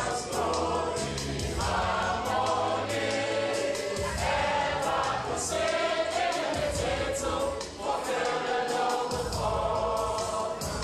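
A large choir, mostly women, singing a gospel song together. Deep bass notes change every couple of seconds beneath the voices, along with a quick beat of percussion hits.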